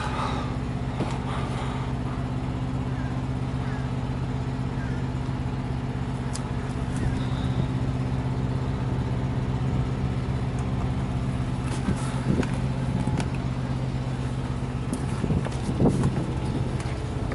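A diesel semi-truck engine idling with a steady, even drone, with a few light knocks and clicks near the end.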